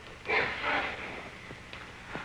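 A person's breath, a breathy snort or sharp intake, starting about a quarter-second in and lasting under a second, over a steady low hum.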